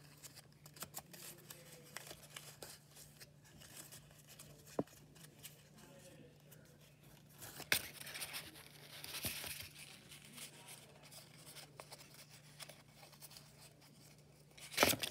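Faint rustling and crinkling of folded paper as an origami pop-it is pinched into shape between its squares, with small scattered crackles; a sharper crackle comes about five seconds in and a louder one about eight seconds in.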